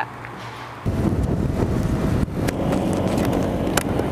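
Wind buffeting the microphone over the running engine of a 125cc scooter under way, cutting in abruptly about a second in, with a few sharp knocks.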